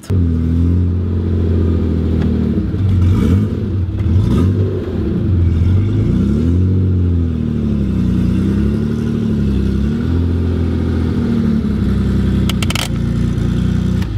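Air-cooled Porsche 911 flat-six heard from inside the cabin while driving, its pitch rising and falling with the throttle and gear changes. A brief clatter near the end.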